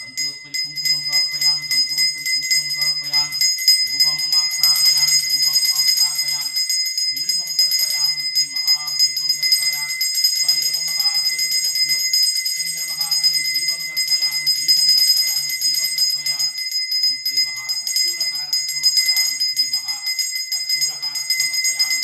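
Puja bell rung continuously, a steady high ringing, under a voice chanting Sanskrit mantras in short phrases.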